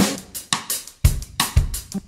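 Drum kit playing a short funk break on its own, with the bass and keys dropped out: separate snare, bass drum and cymbal hits with gaps between them.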